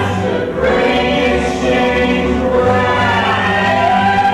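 Cast singing together in chorus, backed by an acoustic folk band of guitars, banjo and upright bass.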